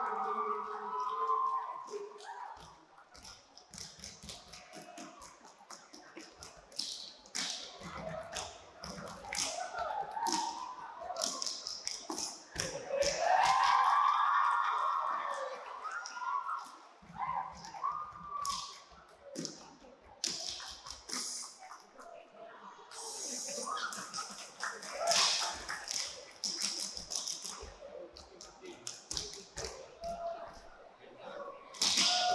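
Saman dancers kneeling in a row, clapping their hands and slapping their bodies in quick unison patterns. A chanted vocal line comes in around the middle and again briefly later.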